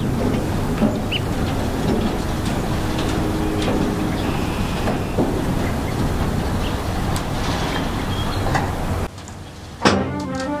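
Steady low rumble of outdoor background noise with a few faint clicks and knocks, dropping away abruptly about nine seconds in.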